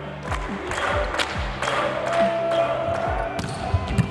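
Arena crowd noise with music over the public-address system and a series of sharp knocks, ending with the smack of a volleyball serve just before the end.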